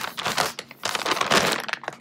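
Plastic food bag crinkling and rustling as it is handled, in irregular bursts with a short lull a little before halfway.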